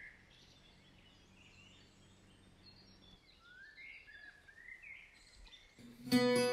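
Faint bird chirps: short rising calls, a few near the start and a cluster through the second half.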